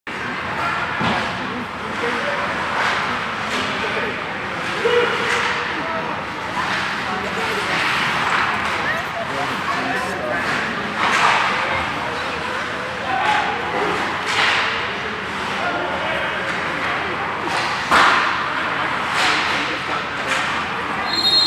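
Ice hockey practice sounds in an indoor rink: sharp cracks of sticks striking pucks and pucks hitting the boards every few seconds over the scrape of skates on ice, with players' voices in the background.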